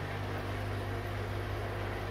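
Steady low hum of an aquarium air pump running the air-lift filters, with a faint hiss underneath.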